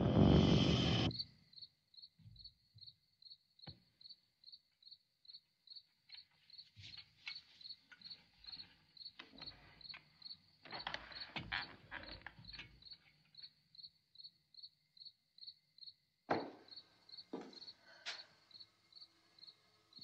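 A music cue cuts off about a second in, leaving crickets chirping steadily at about three chirps a second. Soft rustles and clicks come and go in the middle, and two short knocks come near the end.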